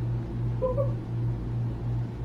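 A brief, muffled, high-pitched vocal sound about half a second in, from someone with a mouth stuffed full of grapes, over a steady low hum.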